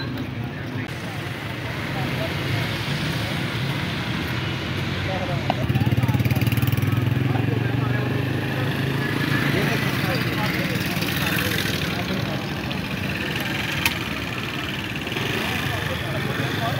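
Street din of many indistinct voices talking at once over the steady hum of vehicle engines running.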